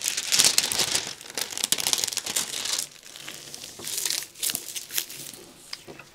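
Diamond-painting canvas and its plastic cover film crinkling as hands press and rub it flat to smooth out creases. It is loudest for the first three seconds, then softer, with a short flurry about four seconds in.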